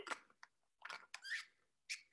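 A few short, quiet noises close to the microphone: swallowing and mouth sounds just after a sip of a drink.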